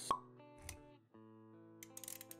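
Intro sound-design music with held notes, opened by a sharp pop sound effect just after the start, which is the loudest moment. A short swish follows under a second in, then the music briefly drops out and comes back.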